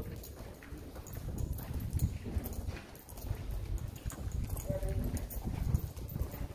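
Irregular clopping steps on stone paving over a steady low rumble, with a voice briefly heard near the end.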